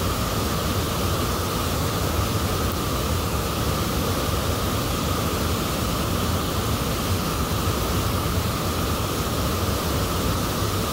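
Steady, loud rush of river water pouring over a wide dam spillway.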